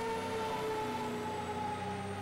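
Fire engine siren sounding a single long tone that sinks slowly in pitch while the engine pulls away from the station.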